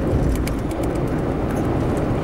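Steady engine and road noise from a car driving at moderate speed, with a few faint ticks about half a second in.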